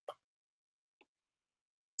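Near silence, broken by a short faint click just after the start and a fainter one about a second in.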